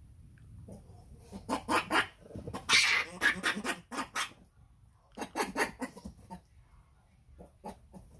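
Young macaque monkeys calling to each other in quick runs of short squeaky calls, the loudest and harshest one about three seconds in, with a second run around five to six seconds.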